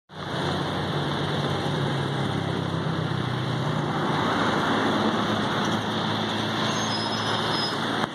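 Steady road-traffic noise from a highway: car and truck engines and tyres passing below.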